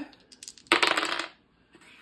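Dice rolled onto a hard tabletop, clattering in a quick run of clicks for about half a second, a little under a second in.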